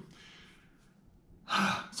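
A man's soft breath out between sentences, fading away over about a second, before he starts speaking again near the end.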